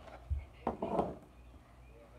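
Cloth rustling and bumping close to the microphone: a low thump about a third of a second in, then a short louder scuffle near the one-second mark.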